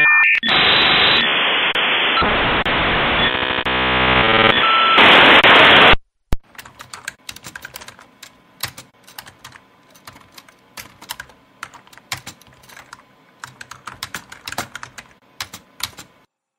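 Dial-up modem connecting: a loud telephone-line hiss with ladders of data tones, cut off suddenly about six seconds in. Then light, irregular computer keyboard typing.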